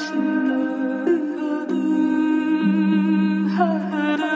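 Intro of a pop song: a wordless hummed vocal line of long held notes that step slowly from pitch to pitch.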